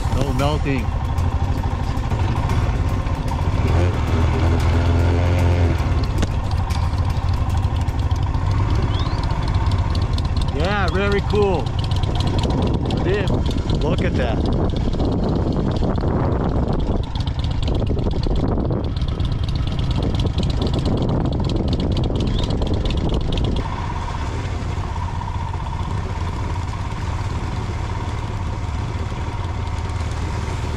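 Motorcycle engine running steadily while riding, with wind noise over the microphone. The level drops a little about three-quarters of the way through.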